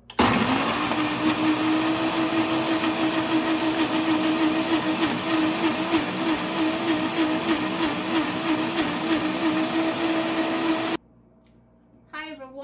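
Countertop blender running at full speed, crushing ice and strawberries with milk into a smoothie. It starts abruptly, settles to a steady motor whine within half a second, and cuts off suddenly about a second before the end.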